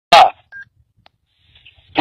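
Handheld two-way radio receiving a call: a short loud burst of radio noise, then a single short beep.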